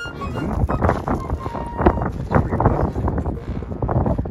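Wind rumbling on the microphone, with irregular crunches of footsteps on loose volcanic cinder gravel.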